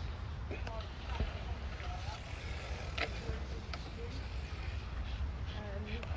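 A steady low rumble with scattered light clicks and knocks as a purple plastic fibre microduct and its fitting are handled, and faint murmured voices.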